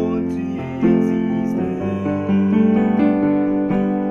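Yamaha portable keyboard played with both hands: held chords over a sustained bass note, changing to a new chord about three times.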